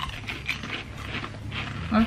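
Thin barbecue potato chips bitten and chewed: a sharp crunch at the start, then crisp crunching about four times a second.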